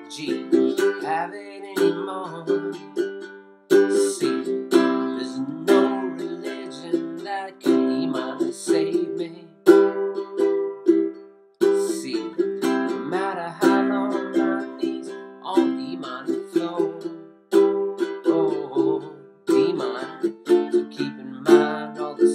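A ukulele strummed in chords, with a man singing over it in places. The strumming breaks off briefly a few times.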